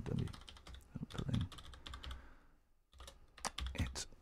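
Typing on a computer keyboard: a run of quick key clicks, a short pause a little past halfway, then a few more keystrokes.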